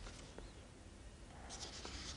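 Faint rustling and handling noise in a quiet room, with a small click about half a second in and a soft rustle starting near the end.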